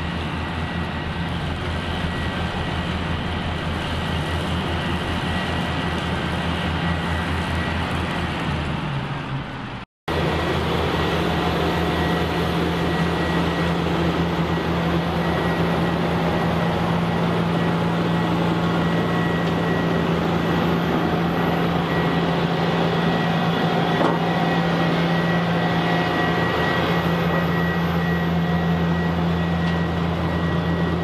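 Heavy farm diesel machinery running steadily: a De Wulf RA3060 self-propelled carrot harvester at work, with a New Holland tractor and trailer running alongside. The sound breaks off abruptly for a moment about ten seconds in, then carries on at the same steady level.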